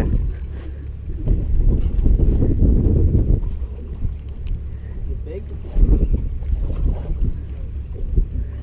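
Wind buffeting the camera's microphone: a loud, uneven low rumble that swells in gusts, louder twice.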